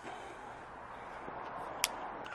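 A product package being handled and opened: a low, steady hiss with one sharp click near the end.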